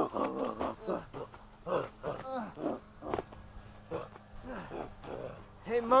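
A person's repeated short grunts and cries, wordless voice sounds in a staged scuffle, over a faint steady high chirring of crickets.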